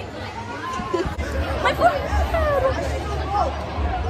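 Hubbub of a crowd of girls' voices talking and calling out over one another, with no single voice clear. A few high, sliding exclamations stand out in the middle.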